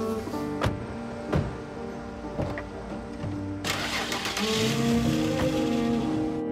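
Car doors shutting twice in the first second and a half. Then, a little over halfway through, an SUV's engine starts and the car pulls away. Throughout, dramatic string music plays over it.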